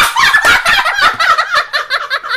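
A young girl laughing hard in a quick run of high-pitched laughs, several a second, easing off slightly toward the end.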